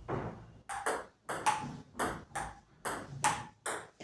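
Table tennis rally: the ball clicks sharply off the table and the paddles, about a dozen hits coming in quick pairs, a bounce then a stroke.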